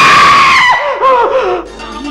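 A man and a woman screaming together in fright: one long, loud, high scream held for most of a second, then shorter falling cries, dying down near the end.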